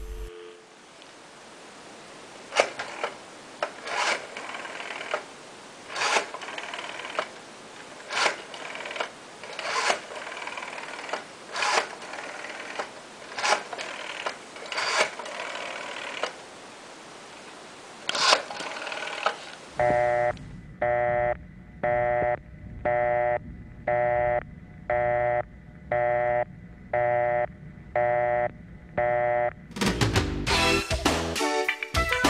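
Rotary-dial telephone being dialed: the finger wheel is wound and released about ten times, each return a short run of quick clicks. About twenty seconds in, a steady tone comes over the off-hook handset, switching on and off in even pulses a little faster than once a second.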